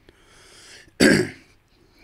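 A man clears his throat once: a short, harsh burst about a second in.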